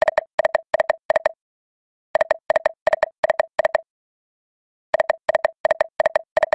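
Video slot game sound effects: short electronic double beeps, five in quick succession, one as each of the five reels stops. The sequence repeats with each spin, about every two and a half seconds.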